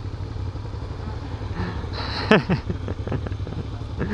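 Motorcycle engines idling with a steady low rumble. A short vocal sound cuts in about two and a half seconds in.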